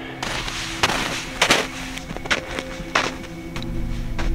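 Footsteps crunching in snow, a handful of irregular steps while climbing a steep slope, over a soft background music track with steady held notes.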